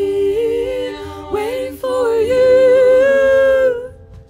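Wordless vocal harmony sung a cappella by several voices, a female lead among them, on long held notes with no instruments; the voices stop shortly before the end.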